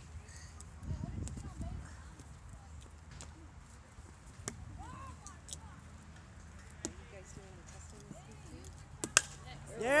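A single sharp crack of a baseball bat hitting the ball, about nine seconds in, over faint distant voices at a ballfield.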